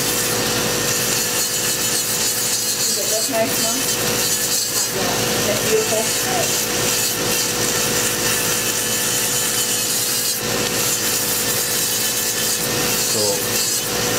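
Electric rotary nail drill grinding down a thick, lifted toenail: a steady motor whine under a constant gritty grinding. The nail is being filed back because it has become too hard to cut with nippers.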